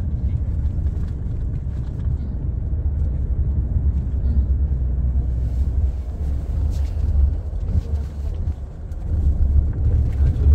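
Steady low rumble of engine and road noise inside the cabin of a moving Tata car.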